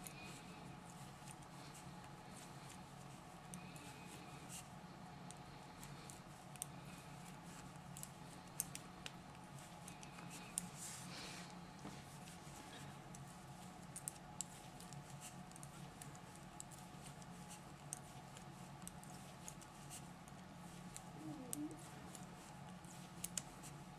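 Faint, irregular clicks of metal knitting needles working stitches, over a steady low hum.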